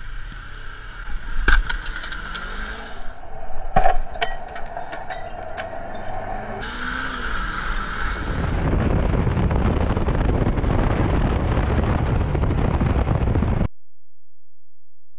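Motorcycle running in traffic, with several sharp knocks and clicks in the first few seconds. From about eight seconds in, a loud steady rush of wind and engine noise on a helmet camera as the bike rides off, cut off abruptly near the end.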